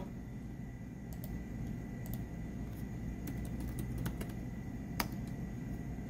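Computer keyboard typing: scattered light key clicks, with one sharper click about five seconds in, over a steady low hum.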